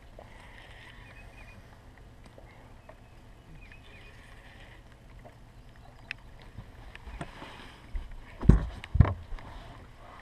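Quiet ambience on a fishing boat with a steady low hum and a few faint high chirps. Near the end come two heavy thumps on the boat, about half a second apart.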